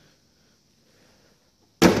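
Near silence for most of the stretch, then a sudden loud thump near the end, together with a short 'mm' from a man.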